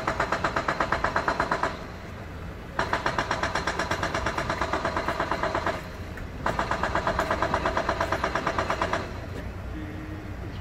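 Hydraulic rock breaker hammering in three bursts of about eight rapid blows a second, each lasting two to three seconds, with short pauses between, over a low steady engine rumble.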